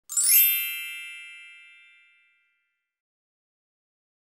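A single bright, chime-like intro sound effect, struck once and ringing out, fading away over about two seconds.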